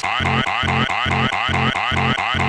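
Hard dance track (makina/hardstyle) with a wailing, siren-like synth riff sweeping up and down over a pounding bass beat of about four hits a second.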